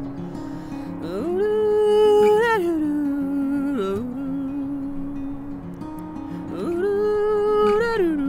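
A man humming a wordless melody with his mouth closed over his own acoustic guitar playing. The humming comes in two long phrases, each sliding up into a held note and then sliding down, the first starting about a second in and the second near the end.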